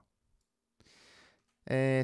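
Mostly silence, broken by one soft intake of breath about a second in, then a man's voice begins speaking near the end.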